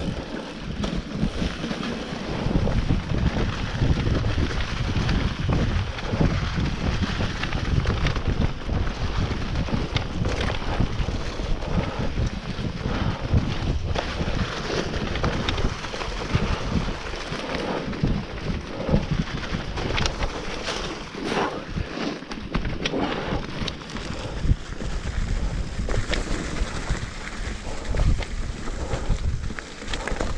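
Wind rushing over the camera's microphone as an enduro mountain bike rides fast down a leaf-covered forest trail, with tyre noise on the dirt and frequent clicks and knocks of the bike rattling over bumps.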